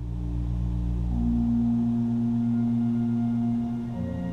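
Pipe organ playing slow, sustained chords over held low pedal notes, with a higher note joining about a second in.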